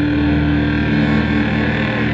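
Electric guitar played through a pedalboard of effects, distorted and layered into a dense wash of long held tones that drones on without a break.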